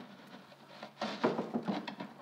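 Handling noise as a stocking-net bag is pulled and folded over the rim of a plastic bucket: rustling and rubbing, with a cluster of soft knocks and scrapes in the second half.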